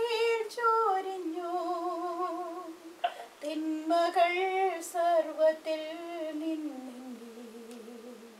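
A woman singing a slow Malayalam devotional song, holding long notes with vibrato. There is a short break about three seconds in, and the line then falls lower and fades near the end.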